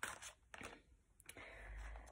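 Faint handling of a tarot card deck: a few soft card clicks and a brief light rustle as a card is drawn from the pack.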